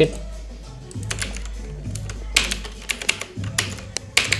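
Computer keyboard keys and mouse clicks tapping out a copy-and-paste of an IP address, about eight sharp clicks from about a second in, over soft background music.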